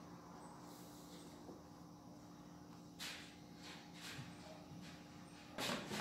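Faint, soft squishing strokes of a hand pressing and smoothing sticky bread dough into a floured baking pan, a few separate strokes over a low steady hum, with a louder brief noise near the end.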